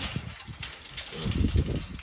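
A young wild hog in a wire cage trap gives low grunts, a short run of them in the second half.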